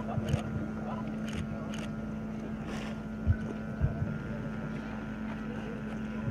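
Open-air ambience with a steady low hum and wind rumbling on the microphone, broken by two dull low thumps a little past the middle.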